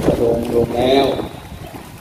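A man speaking Thai into a handheld microphone for about a second, then a short pause filled with a low wind rumble on the microphone.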